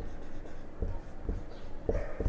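Marker pen writing on a whiteboard: a few short, separate strokes of the marker tip on the board.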